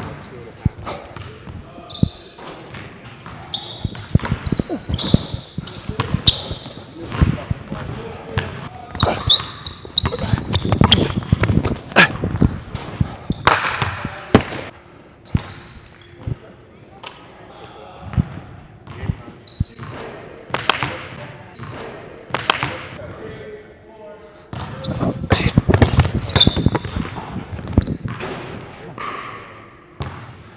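A basketball being dribbled and bouncing on a hardwood gym floor, repeated sharp thuds, with short high squeaks of sneakers on the court.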